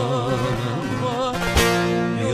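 Turkish folk music played live on long-necked bağlamas and an acoustic guitar: a wavering melodic line over steadily plucked strings, with a strongly struck chord about a second and a half in.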